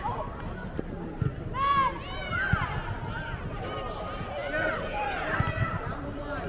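Young players and onlookers shouting short calls across the pitch, with a few dull thuds of a soccer ball being kicked on artificial turf.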